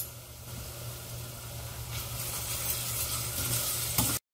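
Chopped onions and spice sizzling in hot oil in a stainless steel saucepan, growing louder about two seconds in. A low steady hum runs underneath.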